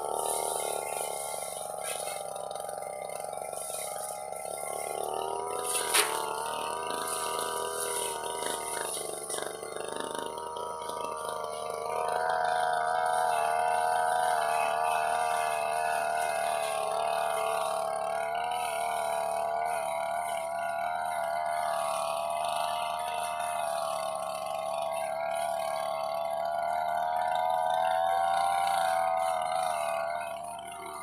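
Backpack brush cutter engine running steadily under load, its pitch wavering with the throttle as it cuts through grass and weeds. A sharp knock about six seconds in, and the engine note grows louder from about twelve seconds.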